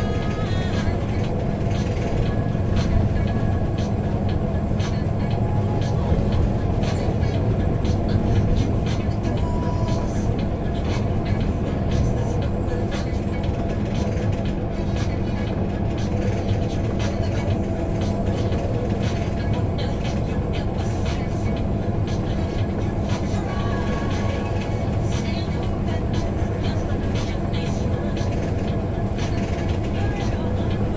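Steady road and engine noise inside a moving car cruising on a highway, with music playing over it throughout.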